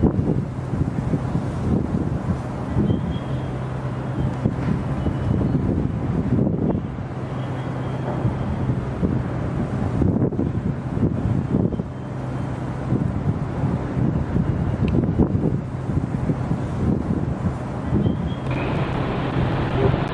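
Wind buffeting a handheld camera's microphone: a gusty low rumble that surges irregularly, over a steady low hum.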